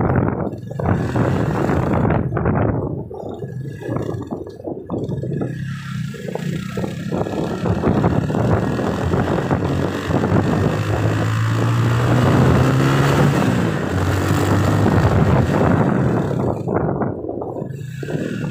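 Engine and road noise of the vehicle carrying the camera as it drives along a street: a low engine hum under a continuous rushing noise, loudest a little past the middle.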